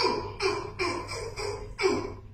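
A person's short, repeated vocal sounds, about five in two seconds, each starting sharply and falling in pitch.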